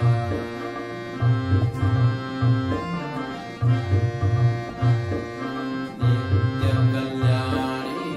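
A harmonium plays a devotional song melody in held reed notes that step from pitch to pitch. A repeating tabla beat runs underneath.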